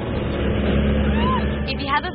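De Havilland Tiger Moth's four-cylinder inline engine running steadily with wind rushing through the open cockpit, heard from the onboard camera. A short voiced cry glides up and down about a second in.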